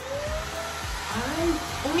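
Monarc Charlie cordless stick vacuum switched on at its lowest power setting (level 1): the motor whine rises in pitch as it spins up over the first second, then runs steady over a hiss of rushing air.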